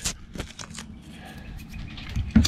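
Faint rustling and a few light clicks as a hand presses and rubs on soft, water-damaged wood framing. The clicks come in the first half second.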